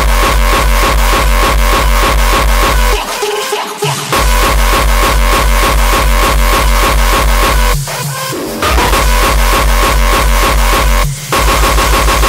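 Uptempo hardcore electronic track: a heavy kick drum pounding fast, nearly four beats a second, under a sustained high synth line. The kick drops out briefly about three seconds in, again near eight seconds and just after eleven seconds.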